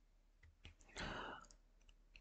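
Faint computer mouse clicks, a few scattered sharp ticks, with a brief soft noise about a second in.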